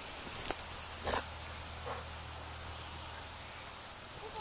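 A dog plowing through deep snow: three short noisy bursts about a second apart, with a low steady hum for a couple of seconds in the first half.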